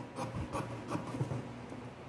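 Metal scissors cutting cloth, with the cloth rubbing and rustling as it is turned on the table. There are a few short, quiet snips.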